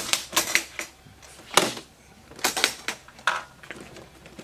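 Metal latches of a Gibson hard-shell guitar case being flipped open one after another: a string of sharp clicks and snaps, the loudest about a second and a half in.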